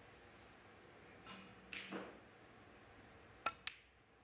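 Two sharp clicks of snooker balls striking, about a fifth of a second apart, near the end. Before them, a fainter short sound falls in pitch.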